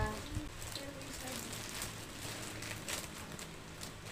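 Plastic courier mailer bag rustling and crinkling, with irregular small crackles as it is handled and opened.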